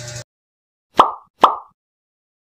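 Two short cartoon 'plop' pop sound effects, about a second in and half a second apart, each a sharp pop with a quick falling tail, over dead silence. A low room hum cuts off suddenly just before them.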